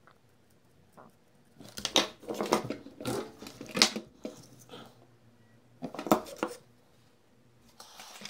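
Handling noise: the plastic vacuum-cleaner motor housing and wires being moved about and set down on a table, a cluster of clicks and knocks from about two to five seconds in and another short one about six seconds in.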